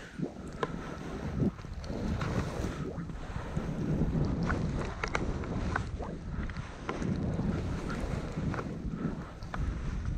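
Skis hissing as they slide and turn through fresh snow, with wind rushing over the microphone, and scattered light clicks throughout.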